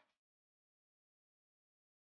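Near silence: the sound track is blank, with no audible sound at all.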